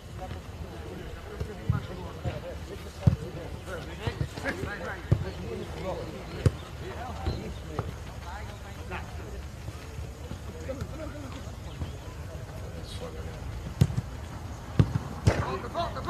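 A football being kicked on a grass training pitch: single sharp thuds every second or two, a cluster near the end. Faint shouts from players come between the kicks, over a steady low rumble.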